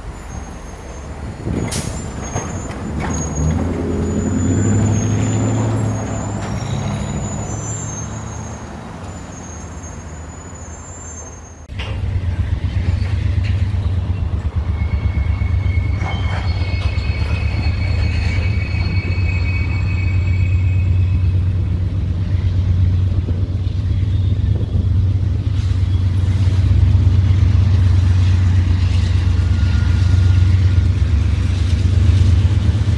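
A hi-rail rail inspection truck's diesel engine running as it moves along the track, with a sharp sound about two seconds in. Then a pair of GE C44-9W diesel-electric freight locomotives approach, working hard: a steady low engine drone that grows louder, with a high whine in the middle.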